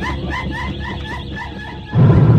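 Live experimental noise music: a short yelping chirp repeating evenly about four times a second over a steady low drone and hum, growing slightly quieter.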